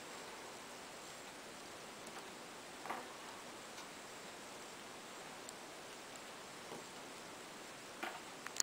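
Faint rustles and soft clicks of papery red onion skin being peeled apart by hand, with a slightly louder crackle about three seconds in, over a steady low hiss.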